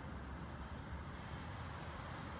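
Steady road traffic: cars, a motorcycle and a bus rolling past at low speed, a continuous rumble of engines and tyres.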